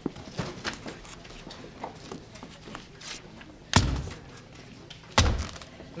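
Two dull thuds about a second and a half apart, from pages being pressed by hand against a pinned-up wall board, with faint paper handling before them.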